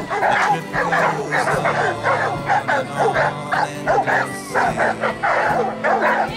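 Bernese mountain dogs barking over and over, in quick short barks about three a second, over background music.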